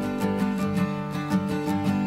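Music: steadily strummed guitar chords with no singing.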